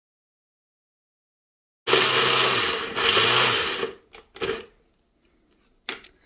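Small electric blender-chopper grinding hard dried turkey tail mushroom pieces, run in pulses by pressing down on its lid. It starts abruptly about two seconds in with two runs of about a second each, then two short pulses.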